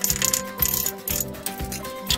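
Hard clinking of old brick and tile rubble knocking together as a tiled stove is taken apart, several sharp clinks in a row, over background music.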